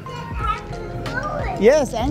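A young child's high voice exclaiming about a second and a half in, over background music.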